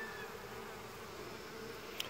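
Honey bees buzzing in an open hive: a faint, steady hum of many bees.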